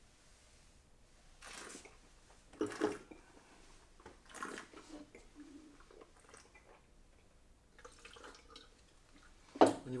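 A wine taster draws air through a mouthful of white wine in three short slurping bursts, aerating it over the tongue, then spits it into a jug spittoon.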